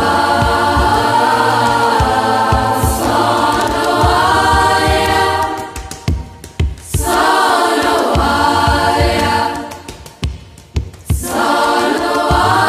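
Music with a choir of voices singing long held phrases over a low accompaniment, pausing briefly about halfway through and again near the end.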